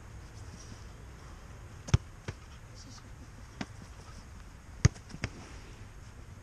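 Sharp thuds of a football being struck and caught: two loud strikes about three seconds apart, each followed by a lighter knock of the ball into goalkeeper gloves or onto the turf, with another knock between them. A steady low rumble, like wind on the microphone, runs underneath.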